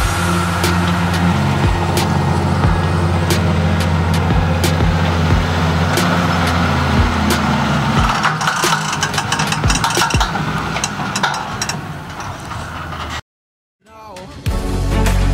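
John Deere 6140R tractor's diesel engine working steadily under load as it pulls a cultivator, mixed with background music with a steady beat. It cuts to silence a second before the end.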